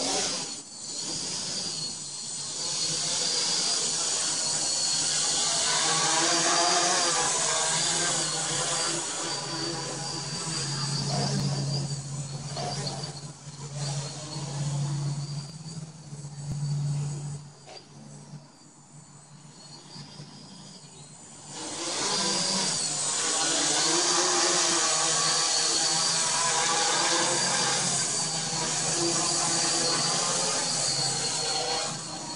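A quadcopter's four brushless motors (HobbyKing 2210N 1000KV) with APC 9x4.7 props spinning up and flying: a loud buzzing whir with a high whine that rises and falls with throttle. It drops away for a few seconds about two-thirds through, then comes back at full strength.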